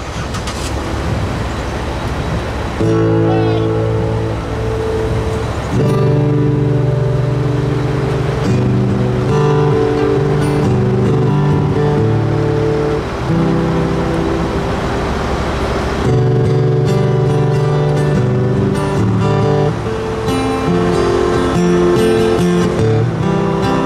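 A few seconds of vehicle noise, then an acoustic guitar playing chords from about three seconds in, each chord ringing on for a second or so before the next.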